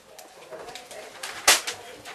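Loose sheets of paper rustling and being swept off a table, with a sharp loud swish of paper about one and a half seconds in.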